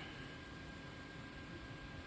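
Faint, steady background noise of a large exhibition hangar, with a thin steady high-pitched tone running through it.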